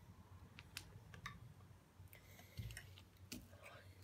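Near silence broken by a few faint clicks and a soft scrape: a spoon and a small plastic container handled as the cream is put in.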